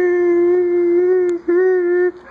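A long, loud vocal howl held on one steady pitch, broken once by a brief gap about one and a half seconds in.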